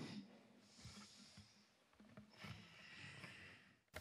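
Near silence with a couple of faint breaths close to the microphone, about a second in and again from about halfway to near the end.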